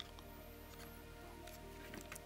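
Faint background music with steady held notes, in a pause between spoken sentences.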